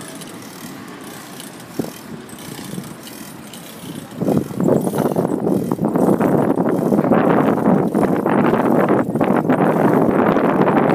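Bicycle riding noise picked up by a phone on the moving bike: a steady rushing noise that turns much louder about four seconds in and stays loud.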